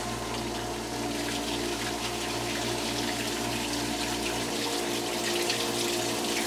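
Honing oil pouring and splashing from a CNC cylinder hone's coolant nozzle onto the engine block, over the machine's steady motor hum, as the six-stone hone head feeds its stones out to the bore diameter. A low part of the hum drops out about four and a half seconds in.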